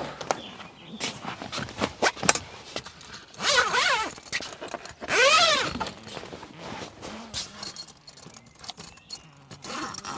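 Canvas roof tent being handled, with scattered rustles and knocks. Two zips are pulled open, each a quick rising-then-falling zip sound, about three and a half and five seconds in.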